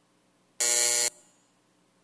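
A single loud electric buzzer tone, about half a second long, with a harsh many-toned buzz that cuts off abruptly. It is the chamber's signal marking the end of a minute of silence.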